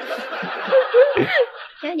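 Several people laughing together, loudest about halfway through.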